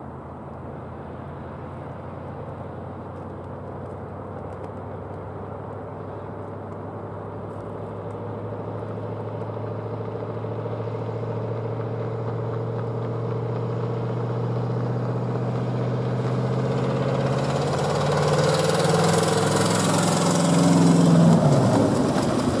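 Engine of a vintage starting-gate car running steadily and growing louder as it leads the field of trotters toward the camera; near the end its pitch drops sharply as it passes. Over the last few seconds the hoofbeats and sulky wheels of the trotting horses on the track come in with it.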